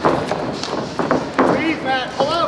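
Several sharp smacks of strikes landing between two fighters in close, the loudest right at the start and two more about a second in, with shouting voices from spectators and corners.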